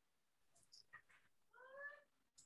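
Near silence with a couple of faint ticks. Near the end comes one faint, short call with a clear pitch that rises slightly.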